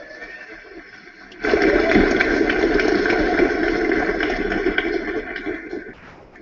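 Audience applauding and cheering, starting about a second and a half in and fading near the end.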